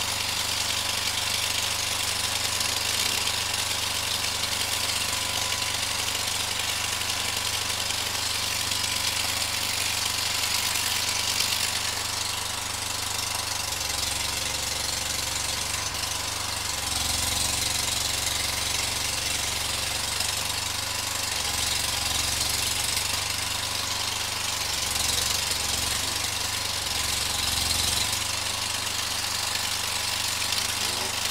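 Bucket truck's engine running at idle, a steady low drone that grows stronger and shifts unevenly in the second half as it works.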